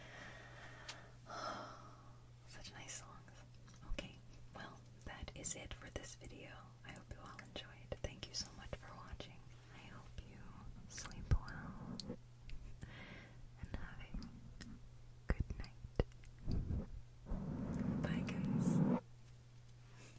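A woman whispering close to a foam-covered microphone, with scattered taps and brushes of fingers on the microphone throughout. A longer, louder stretch of whispering comes near the end.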